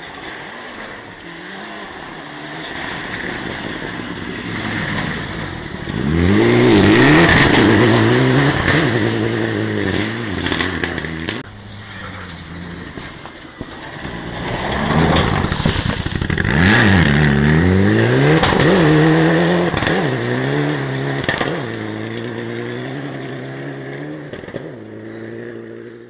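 Mitsubishi Lancer Evolution rally cars with turbocharged four-cylinder engines at full speed on a gravel stage, revving hard with the pitch climbing and dropping at each gear change and lift, and short sharp cracks over the engine. Two loud passes, one about six seconds in and another about fifteen seconds in, then the engine note fades away.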